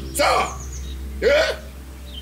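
A man hiccuping twice, about a second apart.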